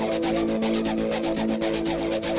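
Electronic music: fast, even, scratchy ticking percussion over held chords, with no bass drum in this stretch.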